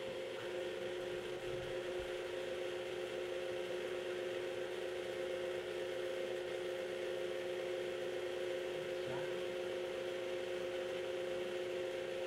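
Electric tilt-head stand mixer running steadily, beating butter, sugar and eggs, its motor giving an even whine of two steady tones.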